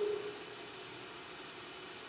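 Room tone in a pause of speech: a steady, faint hiss, with the last of a man's voice fading out in the first moment.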